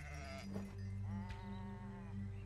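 Sheep bleating: a short bleat at the start, then a longer, steady bleat about a second in, over a low steady hum.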